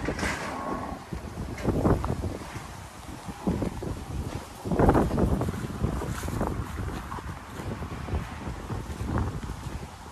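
Wind buffeting the microphone in uneven gusts, loudest about five seconds in.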